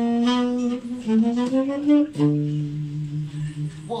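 Saxophone playing a short jazz phrase of connected notes, then holding one long steady note from about halfway through.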